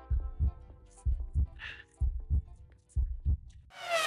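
Heartbeat sound effect: paired low thumps, lub-dub, about once a second, over faint background music.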